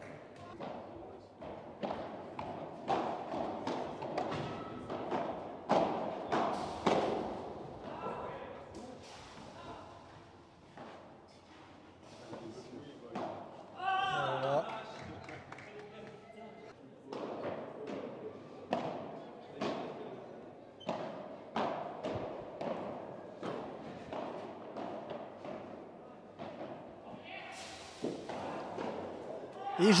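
Padel rally: an irregular series of sharp hits as the ball is struck by solid padel rackets and bounces off the court and walls. A short voice calls out about halfway through.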